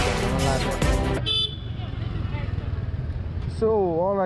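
Music and a man's voice, cut off about a second in. Then the low steady rumble of a Yamaha sport motorcycle's engine in traffic, with a brief vehicle horn toot just after the cut, and a man starting to speak near the end.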